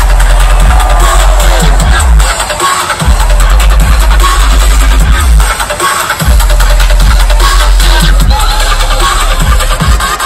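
Loud electronic dance music with heavy deep bass, played live over a festival sound system. The bass drops out briefly about three seconds in and again around six seconds.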